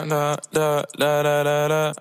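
A lone voice singing a slow melody without accompaniment, in three long held notes with short breaks between them, cut off abruptly at the end.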